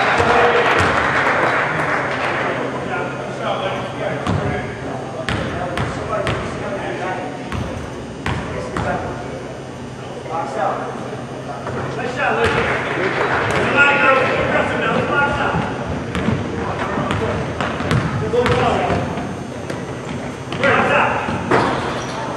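Basketball game in an echoing gym: indistinct voices of players and spectators calling out in several stretches, over scattered thuds of the ball bouncing on the hardwood floor.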